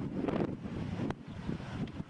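Wind buffeting the camcorder microphone in uneven gusts, with a single sharp click about halfway through.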